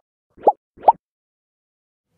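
Two short plop sound effects, each a quick upward bloop in pitch, about half a second apart: an edited-in transition sound for an animated logo wipe.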